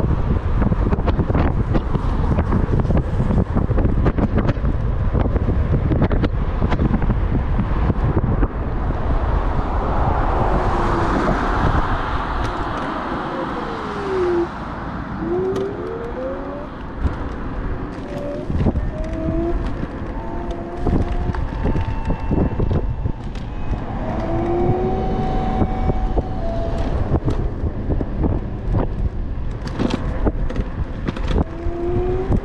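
Wind rushing over an action camera's microphone with tyre and road noise as an electric scooter rides along a road. About halfway the noise eases as it slows, and faint whines rising and falling in pitch come through.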